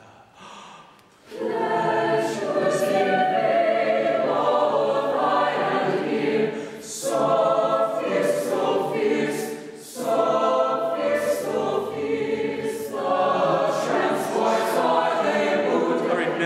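Mixed chamber choir singing a passage in full harmony, starting about a second in, with two short breaks for breath and crisp, prominent 's' consonants, sung with the louder consonants just asked for in rehearsal.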